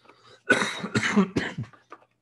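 A man coughing: a short run of several coughs starting about half a second in.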